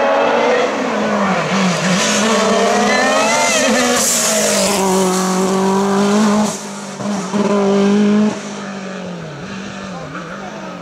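Hillclimb race car engine at full throttle, its pitch climbing and dropping back sharply several times as it runs up through the gears. Near the end it lifts off and the sound grows fainter as the car pulls away.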